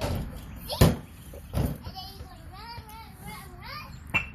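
A basketball coming down on the concrete driveway after a shot: one loud bounce about a second in and a weaker second bounce shortly after. Then a young girl's high voice, without clear words.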